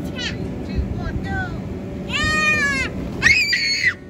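A toddler's high-pitched squeals and calls: short calls, then a long high squeal about two seconds in and a rising shriek near the end, over a steady low noise.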